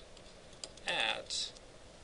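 A man's voice says a short word or two about a second in. The rest is quiet apart from faint light taps, the sound of a stylus writing on a tablet.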